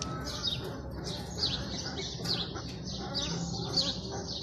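Small birds chirping: a steady run of short, falling high-pitched chirps, two or three a second.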